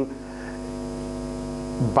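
A man holding a steady, flat-pitched "mmm" hesitation hum for almost two seconds, sliding down in pitch as he goes back into speech near the end.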